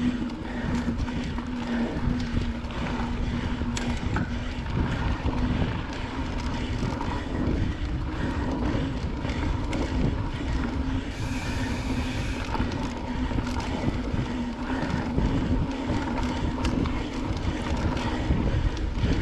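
Mountain bike rolling along a dirt trail: wind buffeting the microphone over the noise of knobby tyres on dirt, with scattered clicks and rattles from the bike.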